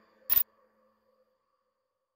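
A single sharp click, like a camera shutter, about a third of a second in, closing the programme's theme music. The last notes of the music die away faintly under it, then it goes silent.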